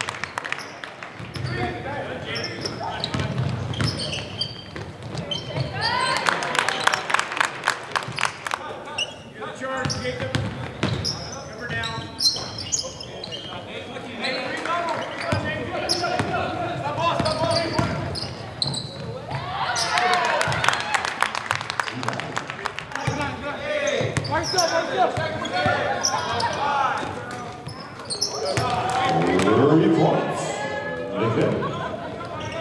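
Live basketball game sound: a basketball bouncing on the court, with indistinct shouting and talking from players and spectators.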